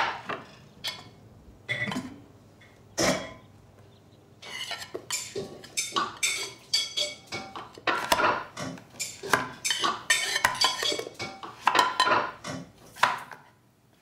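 Dishes and cutlery clinking and clattering. A few separate knocks come in the first few seconds, then a busy run of clinks lasts from about four seconds in until near the end.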